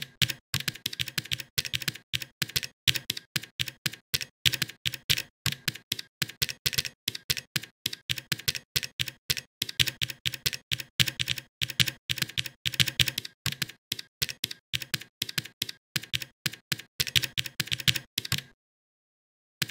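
Computer keyboard being typed on: a steady run of quick, irregular keystroke clicks, several a second, as code is entered.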